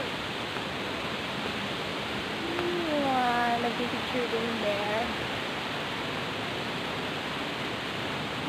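Steady rushing of a waterfall pouring into a pool, with a voice speaking briefly about three seconds in.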